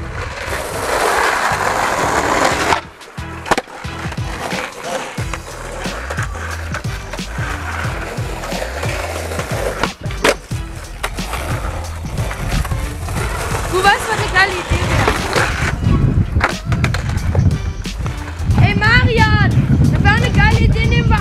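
Skateboard wheels rolling on asphalt: a steady low rumble that grows louder near the end as a rider comes close, with a couple of sharp clacks of the board.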